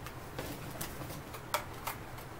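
Quiet handling noise: a few soft clicks and rustles as a small candle in a clear plastic box is taken out of a tote bag.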